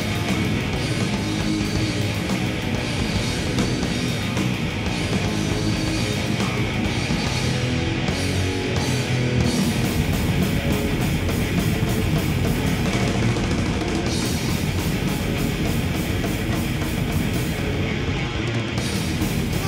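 Heavy metal band playing live: distorted electric guitars, bass and drum kit, loud and steady, with the cymbals standing out more sharply from about halfway.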